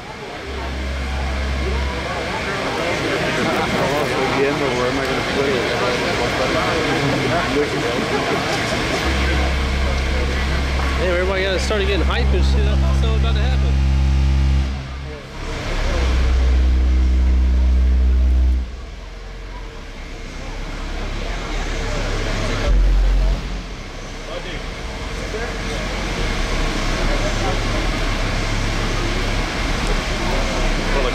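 Car audio subwoofers in a van competition system playing several long, very low bass tones for a decibel meter reading, each held for a few seconds, the longest about six seconds. Crowd chatter in between.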